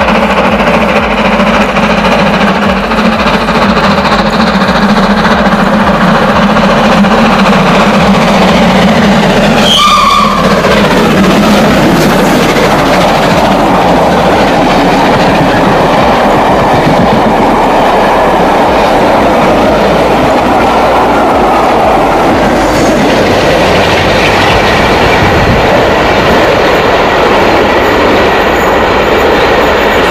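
A steam-hauled passenger train passing at speed: a loud, steady rush and rumble of the working locomotive and the coaches' wheels on the rails, with a brief falling tone about ten seconds in.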